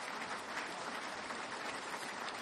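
Audience applauding steadily, a dense wash of many hands clapping.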